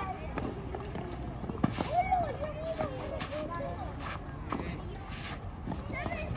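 Children's voices calling out across the tennis courts, with a few sharp pops of racquets striking a green low-compression tennis ball during a rally.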